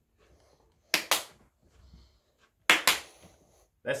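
Hand claps, two in quick succession, about a second in and again near three seconds in.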